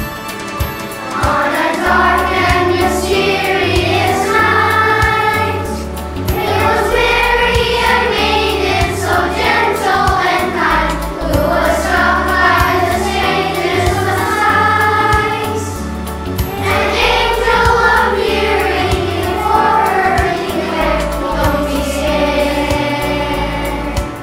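Children's choir singing a Christmas song over instrumental accompaniment, the voices coming in about a second in and singing in phrases with short breaks between them.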